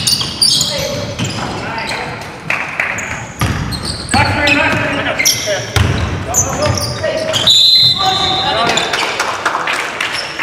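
Indoor basketball game in an echoing gym: the ball bouncing on the hardwood, shoe and body impacts, and players shouting. About three-quarters of the way through comes a short, high, steady referee's whistle blast.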